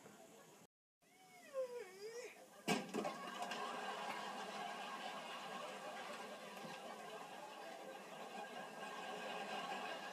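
A vase being rubbed and polished by hand, heard from a television's speaker. A few gliding squeaks come about a second in, then a sharp knock, then a steady run of rubbing and squeaking, a racket.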